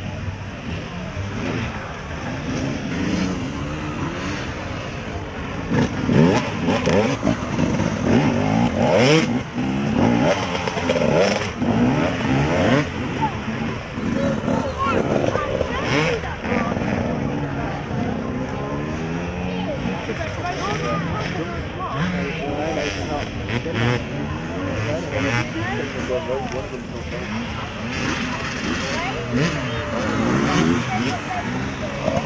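Off-road dirt bike engines revving up and down repeatedly as riders ride a ramp and hop over log obstacles, with voices in the background.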